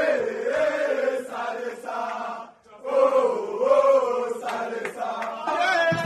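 A group of men chanting a celebration song together in unison, in two long sung phrases with a short break between them. Sharp hand claps join in during the second half.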